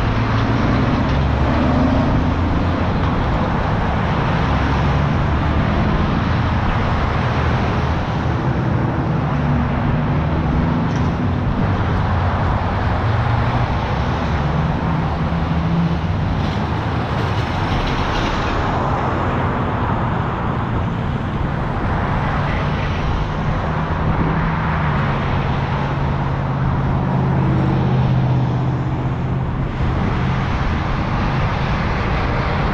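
Road traffic crossing a busy intersection: a steady mix of car, pickup and truck engines and tyre noise. Passing vehicles rise and fall throughout, over a constant low engine hum.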